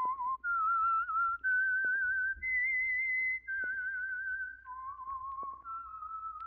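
A person whistling the radio mystery's signature theme tune: a clear, wavering whistle held on one note after another, about eight notes in all. It climbs to its highest note near the middle, then drops and climbs again. Faint clicks lie beneath it.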